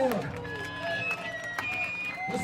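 Voices calling out and talking, unclear, over a faint high steady tone in a lull in the band's playing.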